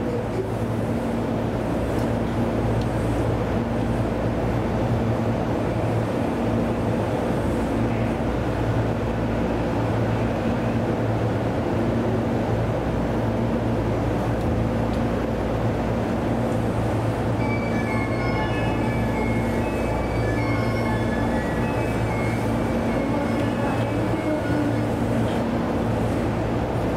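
Steady hum and drone of a stationary E233-series electric train's onboard equipment running while it stands at a platform. From about two-thirds of the way through, a string of short high tones at changing pitches sounds over the hum.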